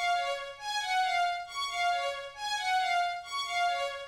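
Sampled string instrument (AIR Xpand!2 legato tremolo strings preset) playing a looping melody, a short phrase of sustained, overlapping notes repeating about once a second.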